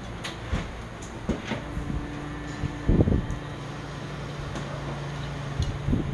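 A metal spoon clicking and scraping in a bowl of soup as a man eats, over a steady low hum that sets in after a second or so; one louder, duller knock about three seconds in.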